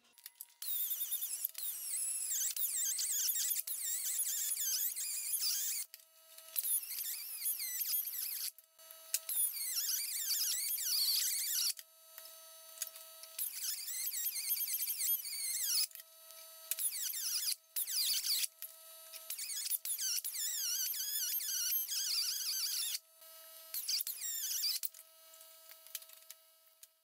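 A small cutoff wheel on a rotary tool cutting through thin aluminium sheet. It gives a shrill, wavering screech in passes of one to three seconds. Between passes the tool runs free with a steady whine.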